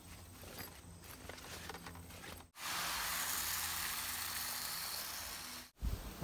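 Winter rye seed handled while filling a hand-crank broadcast spreader: faint rattling ticks of grain, then, about halfway through, a louder steady hiss of seed pouring that lasts about three seconds.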